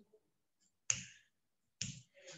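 Two sharp clicks, a little under a second apart, each dying away quickly.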